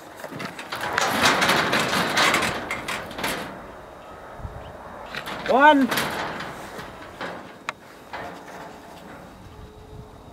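Steel panels of a sheep handling race rattling and scraping for the first few seconds as the ewes in it shift against them, followed by lighter knocks and a single sharp click.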